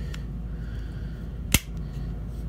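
A single sharp click about one and a half seconds in, as the micarta handle scales are pressed into place on the ESEE Izula knife.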